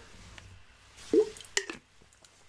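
A person drinking from a bottle: two short gulping, liquid sounds a little over a second in, the second about half a second after the first.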